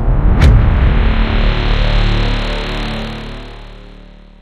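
Electronic logo sting for the brand card: a whoosh about half a second in over a deep sustained hit that rings on and fades out slowly.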